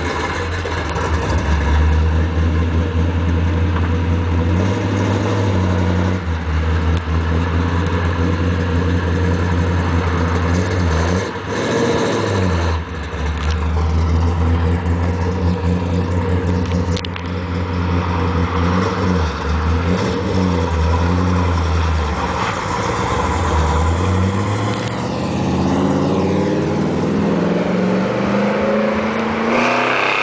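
1956 Chevrolet's engine running steadily at low revs, with a few brief changes in speed and rising in pitch near the end as it revs.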